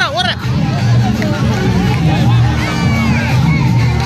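Dance music playing loudly with a pulsing bass, mixed with a crowd of students shouting and cheering as they dance.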